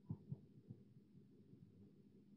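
Near silence: faint room tone with a low hum, and two or three soft low thumps in the first second.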